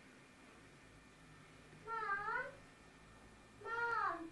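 Two short, high, wavering vocal calls about a second and a half apart, in the manner of a meow or a child's sung note.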